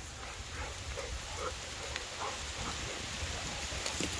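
Steady rain falling, an even hiss with no single loud event.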